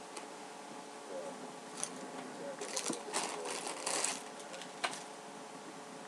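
Fabric rustling as a T-shirt is handled and folded up, in several short bursts that are busiest in the middle, over a faint steady background hum.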